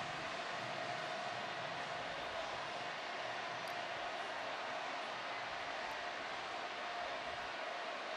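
Steady, even background noise of a ballpark on a television broadcast feed, with no distinct events.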